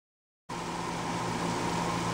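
Silence for about half a second, then a steady low hum with hiss starts: the background noise of the kitchen as the cooking footage begins.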